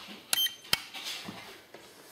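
IMAX LiPro digital balance charger giving two short beeps, a little under half a second apart, as its Stop button is pressed to end the charge on a pair of 18650 lithium-ion cells.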